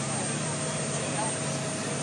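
Steady drone of a ferry's engine, with faint chatter of passengers' voices over it.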